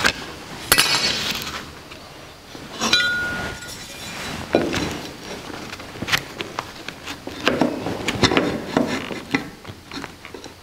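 Metal tools and parts handled on a wooden workbench: a scrape about a second in, then a sharp metal clink with a brief ringing about three seconds in as metal is set down, followed by scattered clicks and the rustle and slide of cardboard and a metal speed square being positioned.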